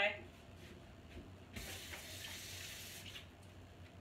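Kitchen sink tap running for about a second and a half as a quarter head of cabbage is rinsed under it.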